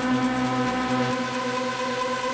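Electronic dance music in a breakdown: held synth chords over a pulsing bass note, with no kick drum.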